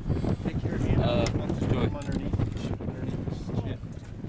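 Wind rumbling on the microphone aboard a small boat at sea, with brief indistinct voices about a second in.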